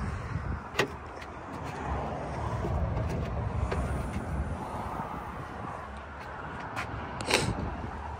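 Rear liftgate of a 2019 Ford Escape being unlatched and raised: a few sharp clicks, the loudest near the end, over a low rumble.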